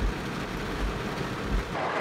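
Steady hiss of rain on a car, heard from inside the cabin, with a low rumble that swells several times. The sound cuts off suddenly near the end.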